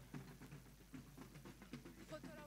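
Near silence: faint room tone with a steady low hum and a few faint scattered ticks.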